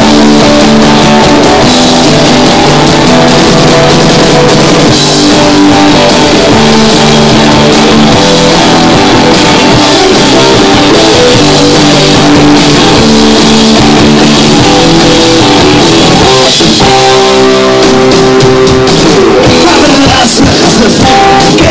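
Live rock band playing loud: electric guitars, bass guitar and drum kit in an instrumental passage, with a short break and a chord change about sixteen and a half seconds in.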